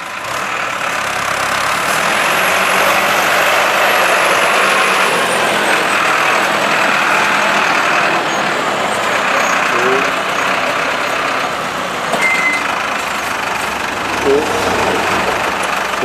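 Valtra tractor's diesel engine running as the tractor drives close by, the sound building over the first couple of seconds and then holding steady.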